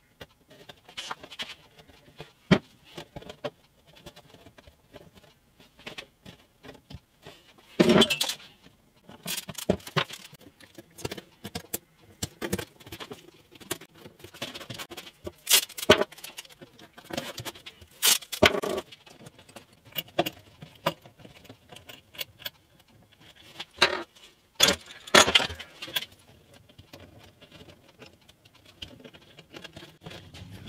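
Masking tape being pulled off the roll, torn into strips and pressed on, with spring clamps clicking into place while guitar binding is glued and taped around the edge of the top: irregular short rips and sharp clicks with quiet gaps between.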